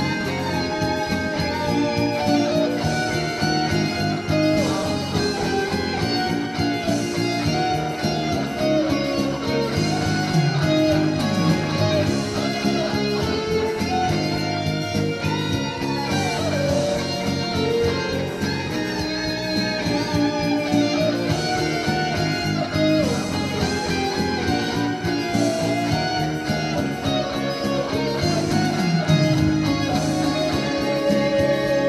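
Electric guitar playing a melody with bent, sliding notes over a fuller musical accompaniment.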